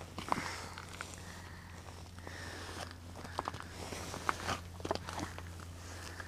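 Quiet scattered clicks and soft crunches of boots and clothing shifting on the ice, over a steady low hum.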